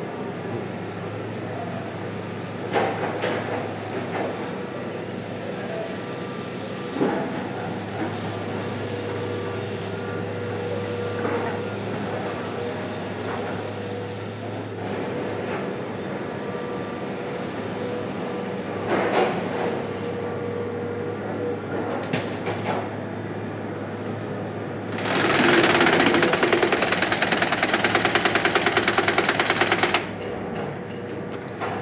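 A steady machine hum with scattered metal clanks. About 25 seconds in, a loud, very rapid rattling starts: a pneumatic impact wrench on an air hose working the wheel nuts of a heavy truck's rear wheel.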